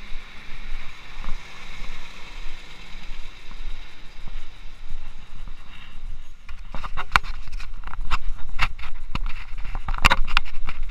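Hand fumbling over a small action camera's body and microphone: a run of irregular scrapes and knocks starting a little past the middle. Before that, a steady low street ambience.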